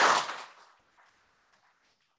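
Audience applause fading out within the first half second, then near silence: room tone.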